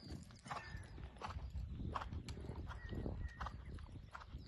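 Faint hoofbeats of a ridden stallion circling an all-weather arena, a few soft, unevenly spaced footfalls a second on the fibre-and-sand surface.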